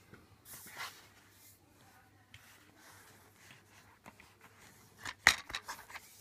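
A plastic DVD case being handled: a brief rustling slide early on, then a sharp snap and a few smaller clicks about five seconds in as the case is opened.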